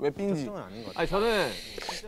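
A man speaking, with a faint hiss in the upper range during the second half.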